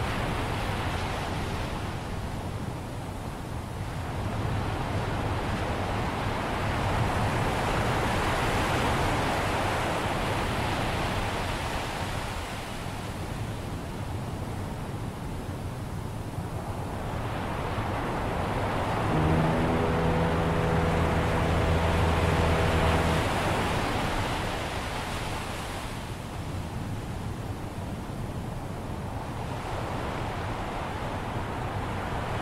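Ocean surf that swells and recedes every six or seven seconds. About two-thirds of the way through, a single low foghorn blast sounds for about four seconds.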